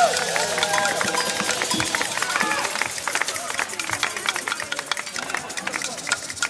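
The final sung note of a large group ends, and the room breaks into applause mixed with voices chattering and calling out. The applause gradually fades.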